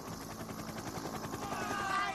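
A steady motor drone with a fast, even pulse from the race's accompanying motor vehicles. About one and a half seconds in, wavering shouts or whistles join it.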